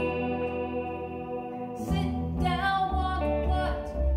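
Folk duo playing an archtop electric guitar and an acoustic bass guitar, with singing coming in about halfway through over held guitar notes and a steady bass line.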